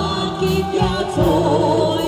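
Live band music from the stage: a wavering melody line over steady bass notes and a drum beat.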